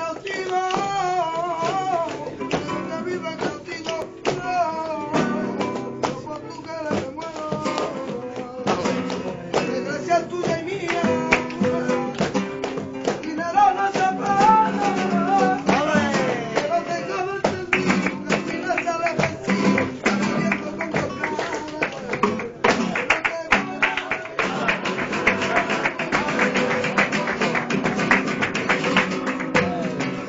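Live flamenco: acoustic guitar with a group's rhythmic hand-clapping (palmas) and a voice singing in wavering, ornamented lines. From about 18 seconds in, the clapping grows denser and louder.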